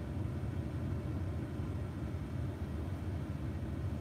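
Steady low rumble in a truck cab, with a faint even hiss above it and no distinct events.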